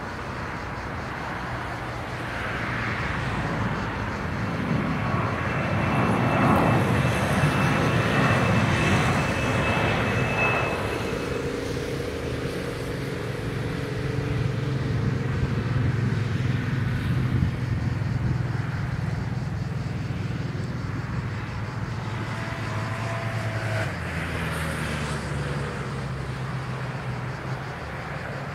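Jet airliner engines running: a rumble that swells to its loudest, with a high thin whine, about six to ten seconds in, then settles into a steadier low drone.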